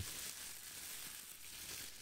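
Thin plastic bag crinkled in the hand, held back from the microphone: a soft, steady crackling hiss.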